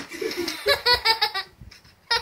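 A young girl laughing in a quick run of high-pitched bursts, drenched with ice water. The laughter stops about a second and a half in.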